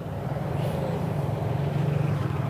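A motorcycle engine running as it rides past close by, a steady low hum over street traffic.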